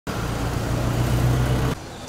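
A motor vehicle's engine running close by with a steady low hum, cut off abruptly near the end.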